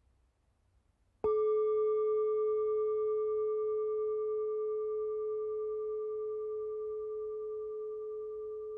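A single bell-like tone struck once about a second in, after silence, then ringing on steadily and slowly fading.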